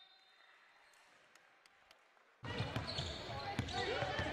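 Near quiet with a few faint ticks, then court sound cuts in suddenly about two and a half seconds in: a basketball dribbled on a wooden gym floor, with repeated thumps and players' voices in the hall.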